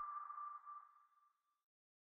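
The last note of the outro music ringing out faintly as a single tone that fades away within the first second and a half, then silence.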